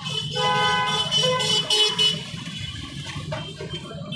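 Vehicle horns honking in street traffic: overlapping steady horn tones sounding for about two seconds near the start, over the low running hum of scooter, motorbike and car engines.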